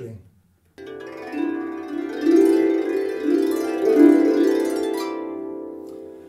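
Small nylon-strung lever harp (Rees Sharpsicle) being plucked: a run of overlapping mid-range notes that build up and ring, then die away near the end.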